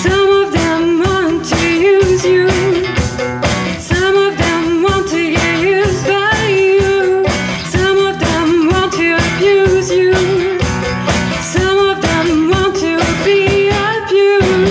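Live acoustic band playing a song: acoustic guitar strummed in a steady rhythm, with violin and a woman singing a wavering melody.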